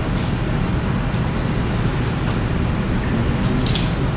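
Steady room noise, a low rumble under an even hiss, with a brief high hiss near the end.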